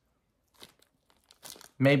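Faint, scattered crinkles of a small clear plastic bag being handled in the fingers, a few light crackles about a quarter of the way in and again shortly before the end.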